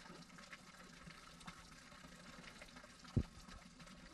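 Faint steady trickle of water running from a stone memorial drinking fountain, under a low hum, with one brief soft thump about three seconds in.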